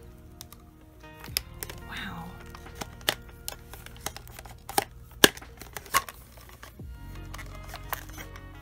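Hard resin joints of a 61 cm ball-jointed doll clicking and knocking as its limbs are bent into poses: a handful of sharp clicks, the loudest a little past five seconds, over soft background music.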